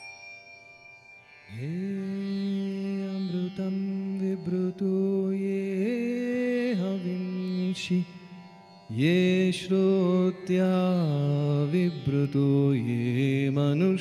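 A singer chanting a Sanskrit mantra in long, held melodic notes that slide between pitches, over a soft instrumental drone. The voice comes in about a second and a half in and pauses briefly past the middle before going on.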